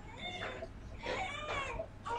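A woman crying in quiet, high-pitched, wavering sobs, twice.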